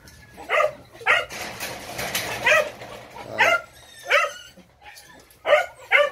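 Phu Quoc Ridgeback puppies giving about seven short, high-pitched barks and yips, spaced irregularly.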